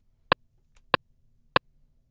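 Metronome count-in from the Akai MPC software: three short, evenly spaced clicks, a little under two a second, on the beat of a 96.5 BPM tempo, counting in the drum pattern.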